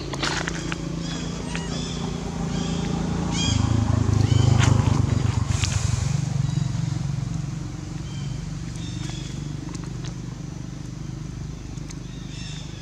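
A motor engine running in the background, a low steady hum that swells louder near the middle and then eases off. Short high chirps and squeaks come over it, mostly in the first half.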